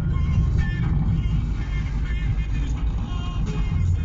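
Steady low rumble of a car's engine and tyres heard inside the cabin while driving, with music playing over it.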